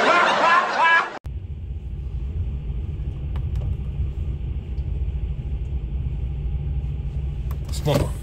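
A man's loud, laughing voice lasts about a second, then cuts off sharply. It gives way to the steady low rumble of a lorry's engine and cab as the truck creeps forward.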